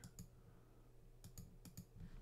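A few faint computer mouse clicks over near silence: one just after the start, then a quick run of three or four in the second second.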